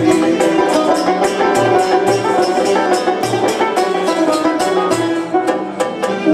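Live instrumental passage of Algerian music: plucked oud and banjo with violin, over low drum beats that fall about twice a second.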